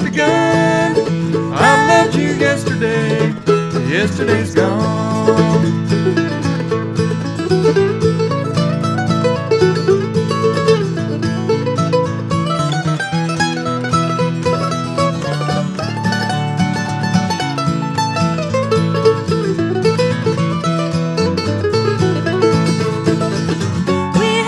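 Instrumental break of a bluegrass song with no singing: mandolin and acoustic guitar playing a quick picked melody over steady strummed chords.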